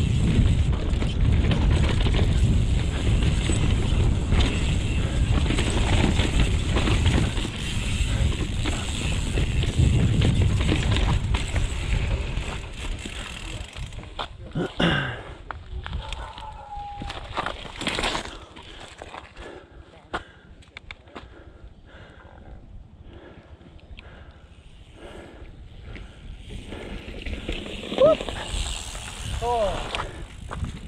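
Mountain bike ridden down a rough dirt trail: a loud, steady rumble of tyres, rattling bike and wind on the helmet camera. About halfway through the bike slows and the rumble drops away, leaving scattered clicks and knocks and a few brief squeals.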